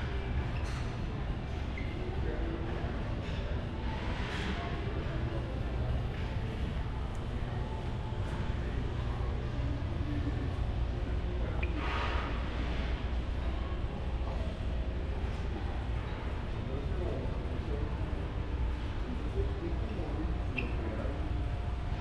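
Shopping mall interior ambience: a steady low rumble, like ventilation, under indistinct background voices, with a few brief brighter sounds around four and twelve seconds in.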